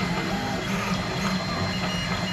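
Monoprice FDM 3D printer's stepper motors running noisily as the print head moves, singing in steady tones that jump to new pitches every few tenths of a second over a fan hum.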